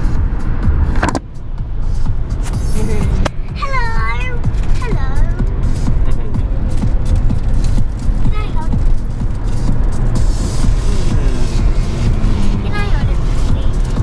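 Steady low road and wind rumble inside a moving car's cabin, with short high voices breaking in now and then.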